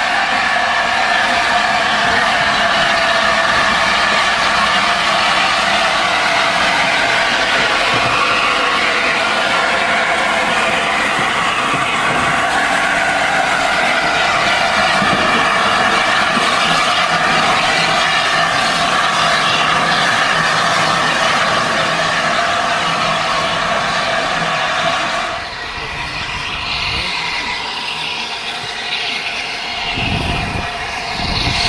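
LNER A4 class three-cylinder steam locomotive 60007 'Sir Nigel Gresley' moving past at close range, giving a loud, steady hiss of steam and running-gear noise. About 25 seconds in the sound cuts off abruptly to a quieter train scene.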